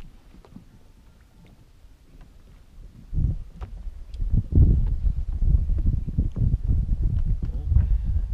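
Footsteps thudding on the boards of a wooden floating dock, starting about three seconds in and going on as a run of irregular, heavy low knocks.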